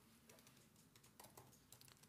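Faint computer keyboard typing: a scattering of soft, irregular key clicks.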